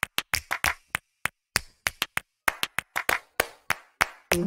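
A run of sharp handclap hits at an uneven pace, about four or five a second, opening a music track.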